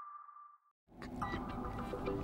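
The last ringing note of an intro jingle fading away, followed by a brief dead silence, then faint room tone from about a second in.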